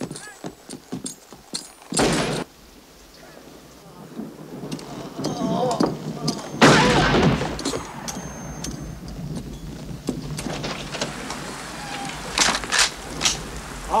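Rainstorm with steady rain and thunder that builds to a loud clap about seven seconds in. There are scattered sharp clicks and knocks in the first two seconds, a short loud crack about two seconds in, and a few more sharp cracks near the end.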